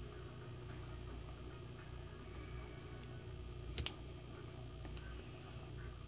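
Quiet handling of a shotgun's steel trigger group as a small coil trigger spring is pressed onto its post, with a brief double click about two-thirds of the way through, over a low steady hum.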